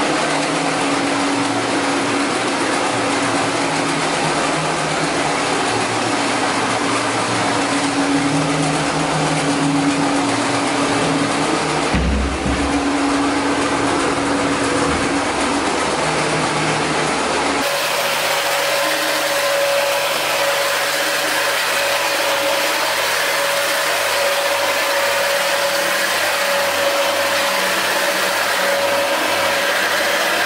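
Counter-rotating brush (CRB) carpet agitation machine running, its two brushes rolling against each other to scrub pre-sprayed carpet: a loud, steady motor hum with a whine over brush noise. Past the middle the hum shifts to a higher pitch.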